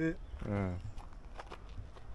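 Footsteps on a dry dirt path: a few light, sharp steps about a second in, following a man's brief spoken word and a short voiced sound.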